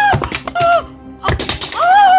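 A woman crying out "aa!" as she falls, with two heavy thuds about a second apart as she and an aluminium stepladder hit a tiled floor, and another cry near the end. Background music plays underneath.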